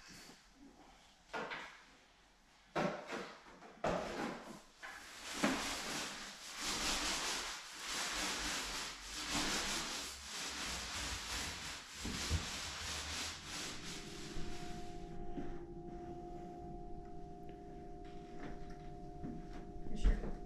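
Paint roller on an extension pole rolling paint onto a wall: a run of rough, rubbing swishes that starts about three seconds in and thins out after about fifteen seconds. A faint steady hum sits underneath in the last third.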